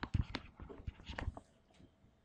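Pen stylus tapping and scratching on a tablet screen during handwriting: a run of quick, irregular clicks that stops about one and a half seconds in.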